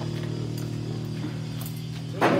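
A steady low hum, unchanging throughout, with a few faint ticks.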